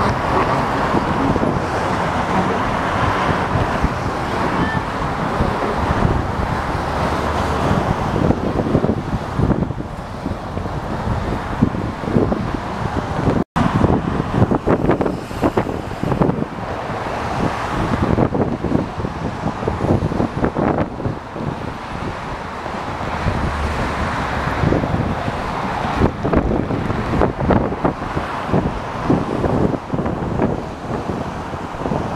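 Wind buffeting the microphone during a bicycle ride, over a steady wash of passing car traffic. The sound cuts out for an instant about halfway through.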